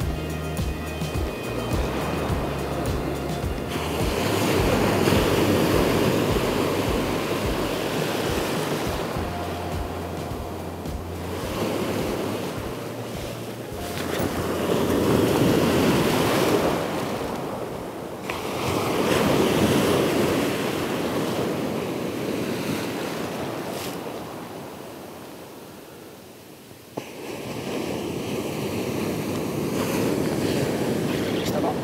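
Ocean surf breaking and washing up a beach, swelling and fading in long surges; the loudest come about five, fifteen and twenty seconds in. Background music runs underneath.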